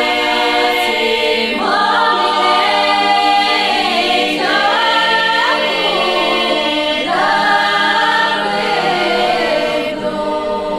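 Bulgarian women's folk choir singing a cappella in close harmony. Sustained chords are held under a solo female voice that enters in gliding phrases about every three seconds.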